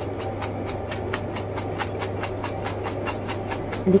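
A small electric motor running steadily with a low hum and a rapid, even ticking of about eight ticks a second.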